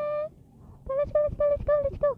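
A woman's voice: a long held note that fades just after the start, then a quick run of about five short syllables chanted on one pitch, the beginning of an excited 'go, go, go, go'.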